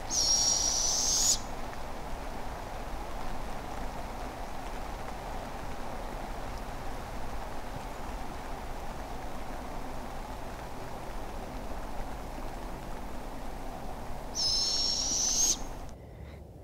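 Juvenile barred owl giving two raspy, hissing screeches, each about a second and a half long with a slight upward lift at the end, one at the start and one near the end: the begging call of a fledgling owlet.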